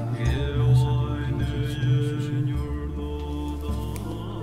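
Devotional music with mantra chanting: long held vocal tones over a steady low drone that shifts pitch every second or so.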